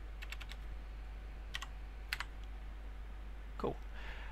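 Computer keyboard being typed on: a quick run of keystrokes near the start, then a few single keystrokes around the middle, as a hex value in a line of code is retyped.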